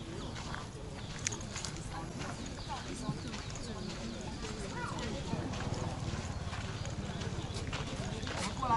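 Footsteps on a dirt path as someone walks with the camera, with indistinct chatter of tourists around.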